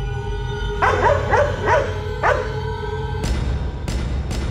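Dramatic music with a held tone and a low rumble, over which a large dog barks four times in quick succession about a second in. A sharp hit lands about three seconds in, and the low rumble swells after it.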